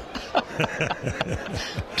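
A man laughing in short, uneven bursts.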